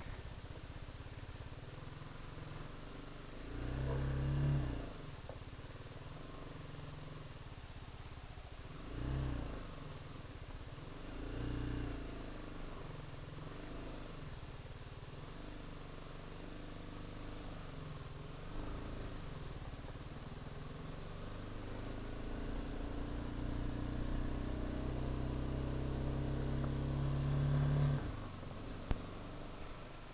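BMW G 310 GS single-cylinder engine running low, with three short throttle blips while the bike is turned around on a slope. Later the engine note builds steadily for several seconds as the bike rides off, then eases off near the end.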